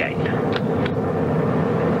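Steady drone of a propeller airplane's engine in flight, heard from inside the cabin, as a radio-drama sound effect.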